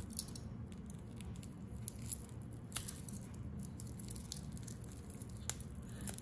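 Faint, scattered small clicks and rustles of a new gold-tone metal watch bracelet being handled while its wrapping is picked and cut off with a small pocket knife, over a low steady hum.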